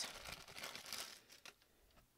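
Faint crinkling of a clear plastic packaging bag being handled, with a few small crackles, dying away about a second and a half in.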